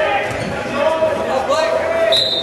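Voices shouting across an echoing gymnasium during a wrestling bout, with a few dull thumps.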